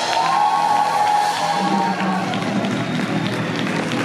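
Live band with drums and bass playing the closing bars of a song, with a long held note for about the first two seconds. The audience starts to cheer and clap.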